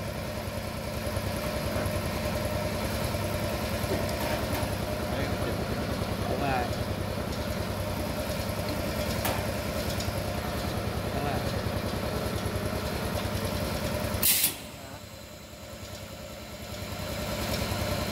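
Stainless-steel honey filling machine running steadily on automatic, with a fast, even pulsing hum. About fourteen seconds in comes a short sharp hiss, the running sound drops away at once, and it builds back up near the end.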